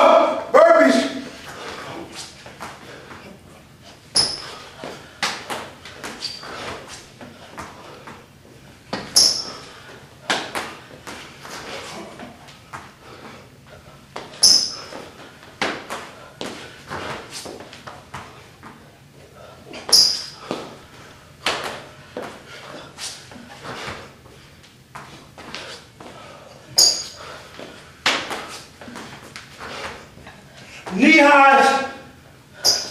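A person doing burpees on a gym floor: a string of short thuds and knocks from hands and feet meeting the floor, with a louder landing about every five to six seconds.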